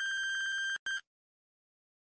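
Electronic time-up beep of a quiz countdown timer reaching zero: one long, high, steady beep of nearly a second, then one short beep.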